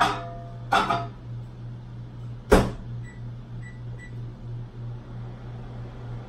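A microwave oven being loaded and set. There is a clatter about a second in, then the door shuts with a loud knock, followed by three short keypad beeps as it is set to run. A steady low hum runs underneath.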